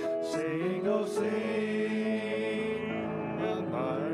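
Two male voices singing a song in harmony into microphones, with piano accompaniment, holding long notes.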